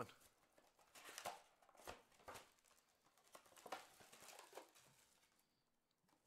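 Faint crinkling and rustling of a plastic trading-card pack wrapper being opened and handled, in a scatter of short soft crackles that die away near the end.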